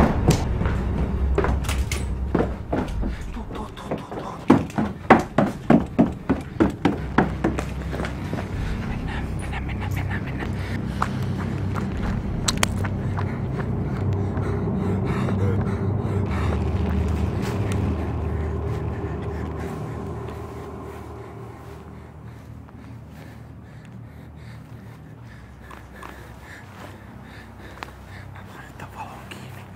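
Hurried footsteps at about three a second from someone carrying a handheld camera, followed by a steady low rumble of camera handling and movement that dies down near the end.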